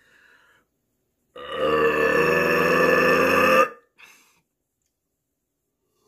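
A man's long, loud burp, starting about a second in and holding one steady pitch for a little over two seconds.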